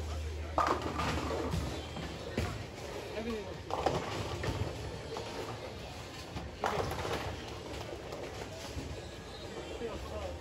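Bowling alley ambience: bowling pins crashing several times, about a second in and again near four and seven seconds in, from this and neighbouring lanes, over a steady low rumble of lanes and pinsetters.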